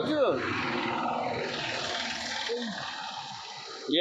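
A man biting into and chewing a slice of fresh watermelon close to the microphone, a steady crunching noise that slowly fades.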